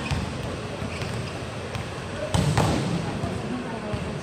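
Volleyballs being hit and smacking the court floor, with a loud pair of smacks a little over two seconds in, over crowd chatter in the hall.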